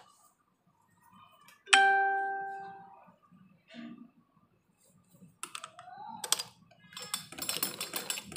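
Light clicks and taps from handling pleated cloth at a sewing machine. About two seconds in, a single clear bell-like ring fades out over about a second. A cluster of clicks comes near the end.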